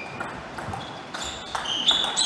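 Rubber shoe soles squeaking on the court floor, with a few light ticks of a table tennis ball. The squeaks grow louder near the end.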